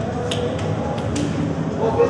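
Players' voices chattering in a stadium tunnel, broken by a few sharp hand claps at irregular moments.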